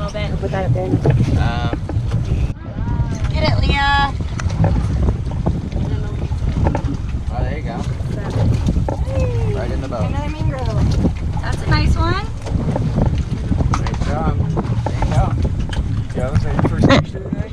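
Wind buffeting the microphone out on open water, a steady low rumble, with voices talking now and then.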